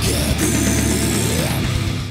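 Heavy metal song chorus: distorted rhythm guitars under a harsh, screamed male vocal that holds a phrase out across the rhythm. It is the phrasing that is hard to sing while playing the guitar part.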